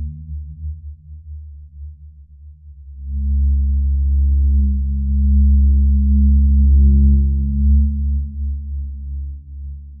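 A deep, steady electronic drone from a horror film score. It swells about three seconds in and eases off near the end.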